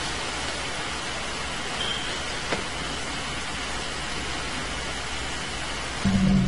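Steady, even hiss of background noise with one faint click about two and a half seconds in.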